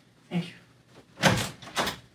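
A room door being opened: the handle and latch worked and the door pulled, giving two sudden clunks in the second half.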